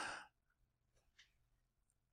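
A man's short, audible breath, a sigh-like rush of air that ends a moment in, then near silence: room tone.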